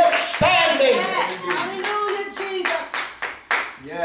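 Hand clapping in a church, becoming quicker and denser in the second half, under a man's voice calling out in drawn-out, song-like tones.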